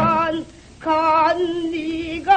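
A woman singing pansori: a long held note with a wide vibrato that breaks off about half a second in. After a brief pause she starts a new phrase, with the pitch wavering and sliding.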